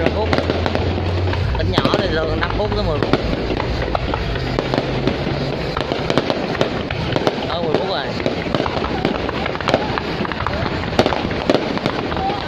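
Aerial fireworks shells bursting in quick, continuous succession, a dense crackle of pops and bangs, with a low rumble under them for the first few seconds.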